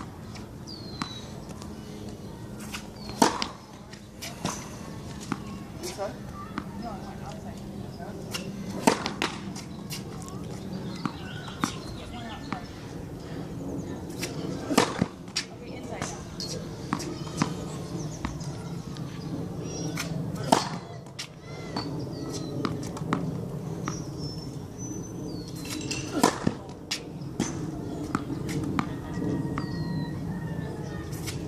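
Tennis racket striking a tennis ball, a sharp crack about every six seconds, with smaller knocks of the ball bouncing on the hard court between hits.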